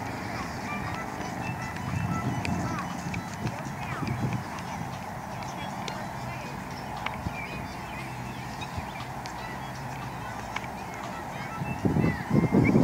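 Outdoor ambience: birds calling in short chirps scattered throughout, over a steady low rumble, with faint distant voices.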